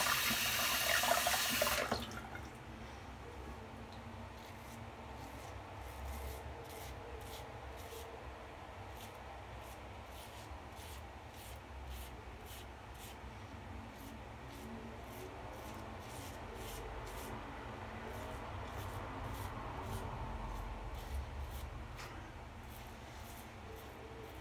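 A bathroom tap runs for about two seconds and cuts off. Then a Gillette Red Tip double-edge safety razor scrapes through lathered stubble in short strokes, a quick rasp about twice a second.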